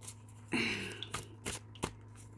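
Tarot cards being shuffled by hand: a short rush of cards sliding together about half a second in, then a few light clicks of cards tapping.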